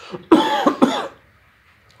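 A man coughs briefly, in two quick bursts.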